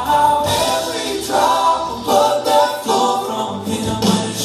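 A group of voices singing a song together in harmony, mostly voices with little instrument.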